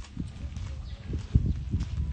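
Footsteps on a gravel path, an irregular run of low thumps with faint crunching, mixed with rumble from the handheld phone being carried along; the strongest thump comes about one and a half seconds in.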